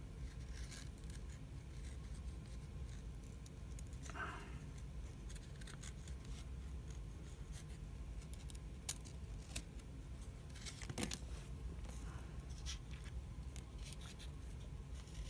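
Faint handling of hockey trading cards, sliding and flicking past one another in the hand, with soft scrapes and a couple of sharper ticks about two-thirds of the way in, over a low room hum.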